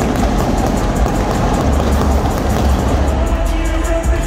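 Loud arena sound during pregame player introductions: music with a heavy, pulsing bass under a dense, even wash of crowd noise.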